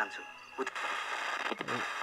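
Portable FM radio giving a steady hiss of static while it is tuned between stations, with a couple of faint clicks.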